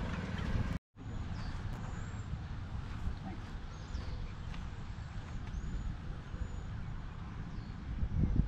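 Open-air ambience: a low rumble of wind on the microphone with scattered short, high bird chirps. A brief dropout to silence comes just under a second in.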